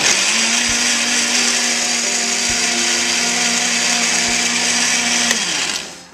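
Sunbeam countertop blender running steadily, pureeing carrot tops in water into a green liquid; it is switched off near the end and its motor spins down.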